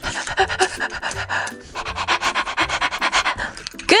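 Dog-like panting, quick breaths about five or six a second, in two runs with a short break about a second and a half in.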